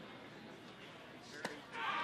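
Faint, quiet ballpark ambience with a single short, sharp pop about one and a half seconds in: the pitched ball smacking into the catcher's mitt.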